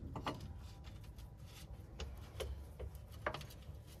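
A wrench tightening the transmission oil filler plug on an air-cooled VW Beetle gives about six faint, irregular metal clicks.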